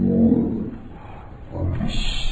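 Soundtrack of old film played at half speed, with voices dragged down into a low, drawn-out growl. It is loudest just after the start, sinks in the middle and swells again near the end.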